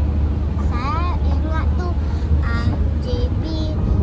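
Steady low rumble of a moving car heard from inside the cabin, with girls' voices talking over it.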